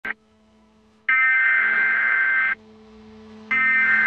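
Opening of an electronic dubstep track: a distorted, bright lead note held for about a second and a half, starting about a second in and repeating near the end, over a low steady drone.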